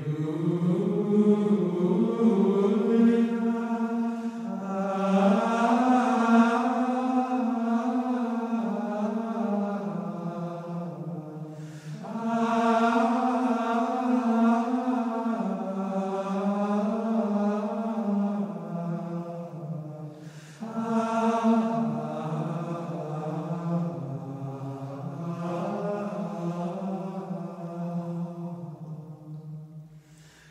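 Gregorian chant sung in unison by the Benedictine monks' male voices, a slow flowing melody in three long phrases with brief breaths between them, about 12 and 21 seconds in.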